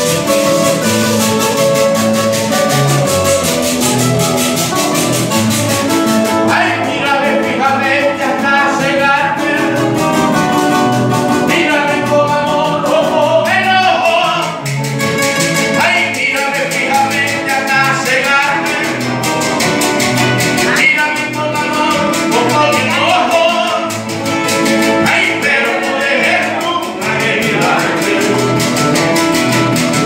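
A live trio playing a merengue on two acoustic guitars with hand percussion. Singing comes in about six seconds in and carries on over the steady strummed rhythm.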